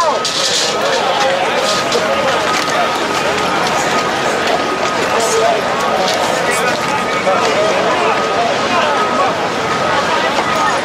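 A loud crowd of many overlapping voices shouting and talking at once, so that no single speaker's words stand out.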